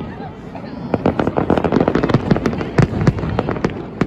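Aerial firework shells bursting in a rapid barrage of bangs and crackles, thickening about a second in and thinning out just before the end.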